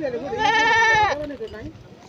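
Goat bleating: one wavering call of about a second.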